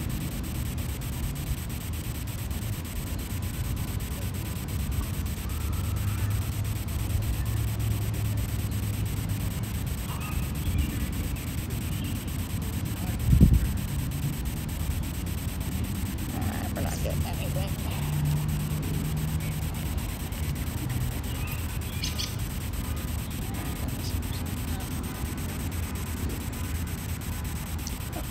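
Outdoor ambience: a steady low rumble of wind on the microphone, with a few faint bird chirps and one sharp thump about halfway through.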